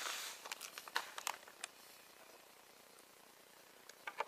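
Plastic bag of Epsom salt crinkling as it is handled, with a few light clicks and taps in the first two seconds.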